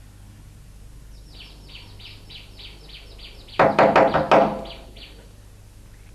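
Bird calls: a rapid series of high chirps, about five a second, with a brief loud burst of four or five harsher calls in the middle.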